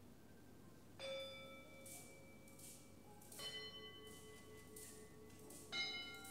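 Altar bells struck three times, faint, each strike a different pitch and left ringing on. They are rung at the consecration as the priest elevates the host.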